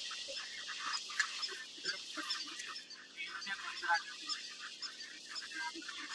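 A large herd of wildebeest calling: many overlapping short, nasal grunts and honks, a dense chorus with no pause.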